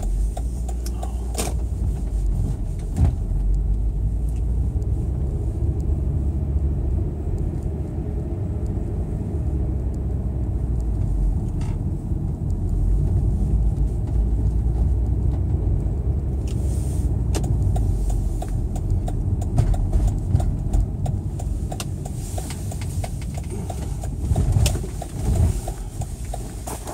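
Steady low rumble of a car on the move, heard from inside the cabin, with a few short knocks scattered through it.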